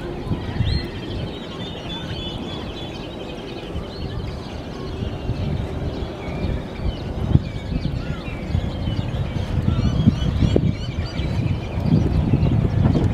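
Birds calling and chirping again and again, high and fairly faint, over a steady low rumble that grows a little louder near the end.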